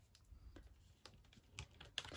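Near silence with a few faint light taps and ticks as card stock is pressed and handled by hand on a craft mat.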